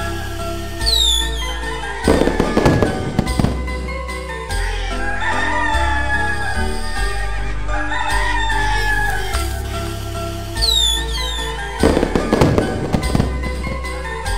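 Background music with a steady beat, overlaid with firework sound effects: twice a high falling whistle followed by a burst of crackling bangs, once near the start and again near the end. In between, a rooster crows twice.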